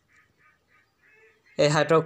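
A pause with only faint, soft pulses about three times a second, then a man's voice starts loudly near the end in a drawn-out, nasal, chant-like delivery.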